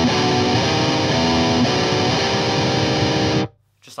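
Heavily distorted electric guitar playing a simplified black-metal riff as plain chord changes: an open low E and a B minor triad shape moved up a semitone, the chords changing about every half second. It cuts off suddenly about three and a half seconds in.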